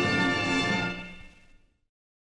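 The final held chord of an orchestral ballad accompaniment, fading away from about a second in until it stops.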